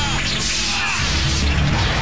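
Fight-scene sound effects: several quick whooshes of weapons swinging through the air, over background music.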